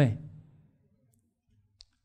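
The last spoken word of a question fades out within about half a second. It is followed by room quiet and a single short, sharp click near the end.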